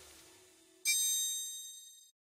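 A single bright metallic ding from a logo sound effect, struck a little under a second in and ringing high before fading away over about a second.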